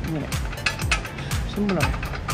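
Quick, irregular metallic clicking and ticking as parts are handled at a Royal Enfield's front wheel hub, where the speedometer drive sits, over background music.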